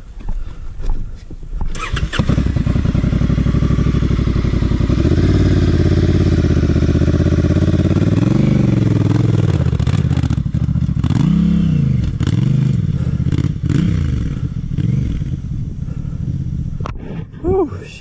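Large adventure motorcycle's twin-cylinder engine starting about two seconds in and running steadily, then a series of throttle blips, each rising and falling in pitch, as it is ridden off down a rocky trail.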